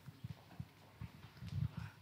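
Faint, irregular low thumps of footsteps on a stage floor, picked up through the handheld microphone the walker is carrying.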